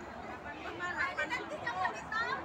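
Only speech: people chattering, with no other sound standing out.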